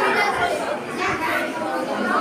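Many people talking at once in a large hall: a steady hubbub of overlapping voices with no single speaker standing out.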